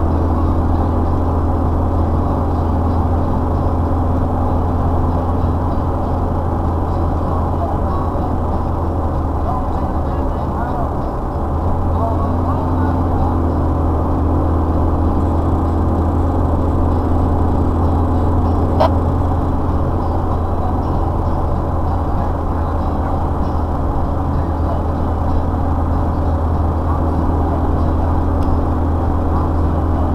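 Engine and tyre noise inside a vehicle's cabin at highway speed: a steady low drone that eases and shifts briefly about eleven seconds in. There is a single sharp click a little past halfway.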